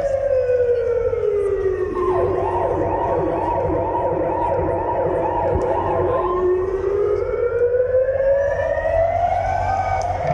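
A siren-like wail over the arena PA, falling slowly in pitch for about four seconds and then rising back up. A second, wavering layer of tones joins it in the middle.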